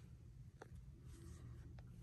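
Near silence: room tone with a low steady hum and two faint clicks, one about half a second in and one near the end.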